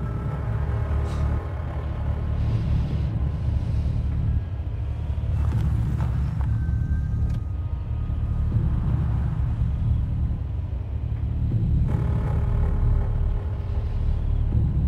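Low, steady rumble of a car's engine and road noise heard from inside the cabin while driving slowly, with a faint dark music score of held tones underneath.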